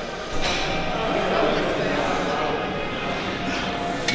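Busy gym ambience: indistinct voices of other people in a large weight room over a steady background hum, with no close speech and no single loud event.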